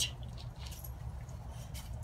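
A pause in which only a steady low rumble of background noise is heard, with faint hiss and a couple of very faint ticks.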